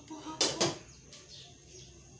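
Metal pot lid clinking twice in quick succession about half a second in, as it is lifted off a pot and set down, with a short ring after each hit.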